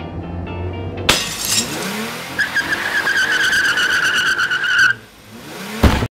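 Animated-film sound effect of a bus skidding under hard braking: a sudden burst of noise about a second in, then a steady high tyre squeal for a couple of seconds over orchestral music. It ends in a sudden loud impact that cuts off at once.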